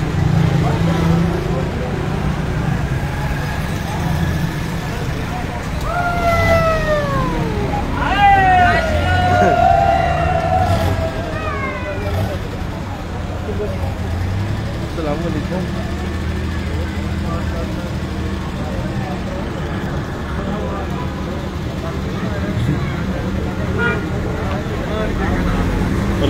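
Street traffic, a steady low rumble of vehicle engines passing close by. Between about 6 and 12 seconds in, a run of swooping, siren-like tones glides down and up several times.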